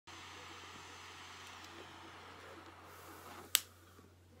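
Butane lighter's gas flame hissing steadily while lighting a cigar, fading out after about three seconds, then a single sharp click of the lighter.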